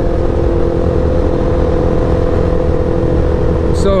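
Sportbike engine running at a steady, unchanging pitch while cruising, with a constant rush of wind noise on the microphone.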